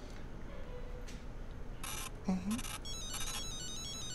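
A mobile phone ringtone starts about three seconds in: a quick electronic melody of high beeping notes. It comes just after two short noisy bursts.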